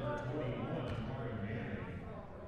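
Indistinct male speech echoing in a gymnasium over a steady background of hall noise.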